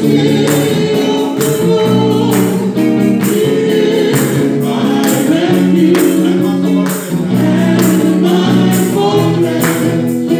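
Live gospel worship song: a woman singing lead into a microphone over an electric guitar, with a steady percussion beat.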